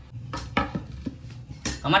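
Metal kitchenware clinking: a few light knocks of steel utensils and dishes, then a louder clatter near the end.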